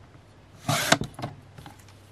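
Fiskars sliding paper trimmer cutting through a book cover: a quick swish as the cutting head is drawn down its rail, ending in a sharp click, with a couple of lighter clicks after.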